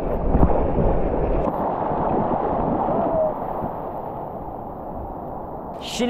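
Breaking surf washing and churning around a surfer's board in shallow water, loudest in the first second or two, then easing off after about three seconds.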